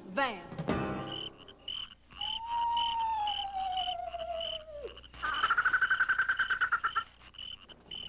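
Eerie night-time sound effects: a high chirp repeating about twice a second, a long slowly falling whistling tone, then a rapid croak-like trill about five seconds in that lasts about two seconds.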